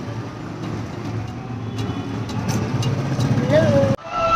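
Steady engine and road noise from inside a moving vehicle, with a low hum throughout.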